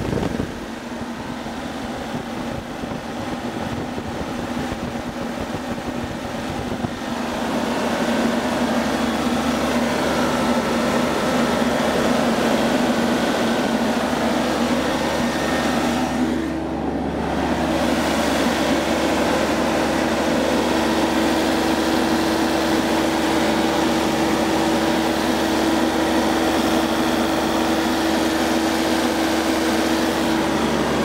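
Yanmar 3TNV84-T three-cylinder turbo diesel engine running steadily, heard close up in the engine bay; it gets louder about seven seconds in and its tone shifts slightly a little past the middle.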